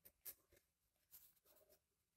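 Faint scratching of a pen writing on notebook paper, in a few short strokes.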